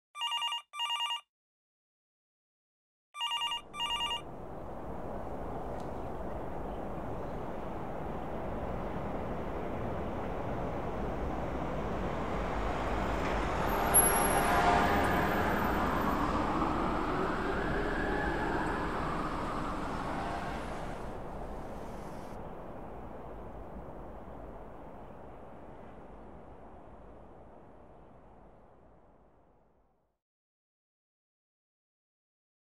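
A mobile phone ringtone sounding two double rings, brr-brr, in the first four seconds. Then a steady rush of city traffic noise fades in, with tones that rise and fall in the middle, and slowly fades away toward the end.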